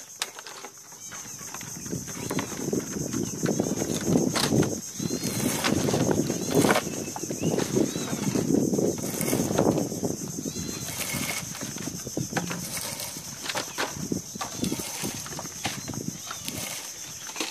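Seaweed being stripped by hand from its rope, the rope pulled through a small hole in a wooden post: a rustling, scraping noise that is loudest through the middle, with scattered sharp clicks.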